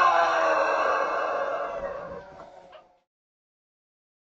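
A rooster crowing: one long drawn-out crow that fades away and stops about three seconds in.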